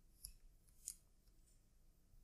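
Near silence with two faint clicks about two-thirds of a second apart, from fingers handling the camera body.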